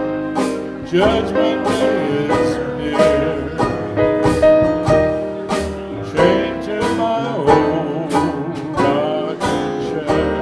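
A big band playing live: horns holding melody notes over strummed guitar, upright bass and drums, with frequent cymbal strokes.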